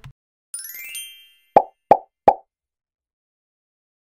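Animated end-card sound effects: a brief high chiming shimmer, then three quick cartoon plops about a third of a second apart.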